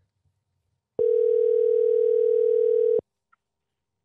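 Telephone ringback tone on an outgoing call: a single steady ring lasting about two seconds, starting about a second in, with the narrow, thin sound of a phone line.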